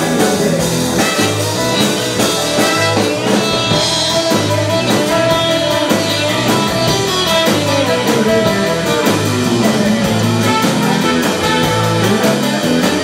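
Live soul-blues band playing an instrumental passage: a semi-hollow electric guitar takes the lead over bass guitar and drums, with no vocals.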